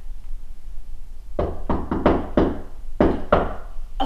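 Knocking on a front door: a quick run of about five knocks, then two more about a second later.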